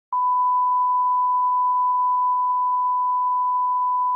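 A steady, pure, single-pitch line-up test tone, the reference tone that runs with colour bars for setting audio levels. It starts abruptly just after the beginning and holds at one even pitch and level.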